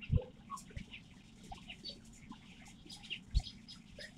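A flock of small birds chirping in short, scattered calls as they feed and squabble over corn. Two brief low thumps, one just after the start and one near the end.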